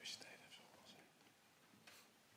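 Near silence, with faint whispering from the audience and a short soft click near the end.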